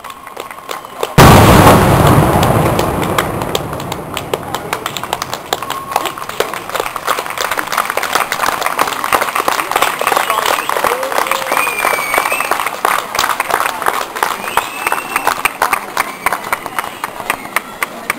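Fireworks: a rocket rises, then a loud bang about a second in, followed by dense, continuous crackling of many small bursts that lasts until near the end.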